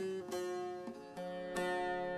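Bağlama (long-necked Turkish saz) being softly plucked: a handful of single notes, each left ringing.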